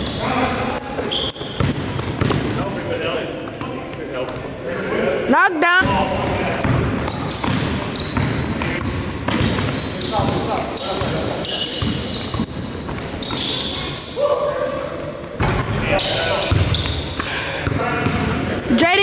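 Indoor basketball game on a hardwood gym floor: a basketball bouncing and sneakers squeaking in short high chirps, with players' voices echoing around the large hall.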